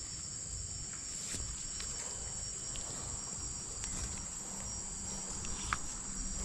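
Steady, high-pitched insect drone, with a few faint clicks scattered through it.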